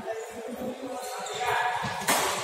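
Badminton doubles rally: players' feet thumping on the court mat and racket strikes on the shuttlecock, echoing in a large hall, with voices in the background.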